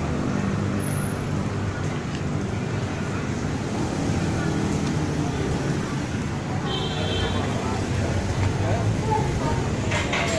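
Steady low rumble of city street traffic, with indistinct voices in the background and a short high beep about seven seconds in.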